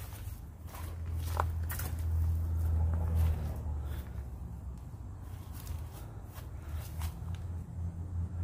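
Footsteps walking slowly along a pickup truck, a few irregular scuffs and clicks over a steady low hum.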